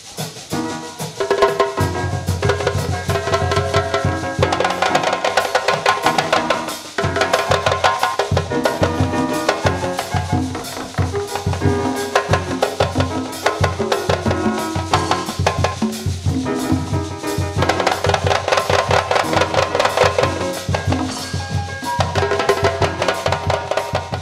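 A live band playing percussion-driven fusion music: a djembe and drum kit keep a steady, busy beat under pitched instruments.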